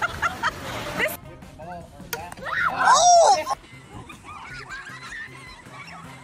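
Voices laughing in short bursts, then a loud, high-pitched shout or shriek about three seconds in, over background music; after the shout it drops to quieter background voices.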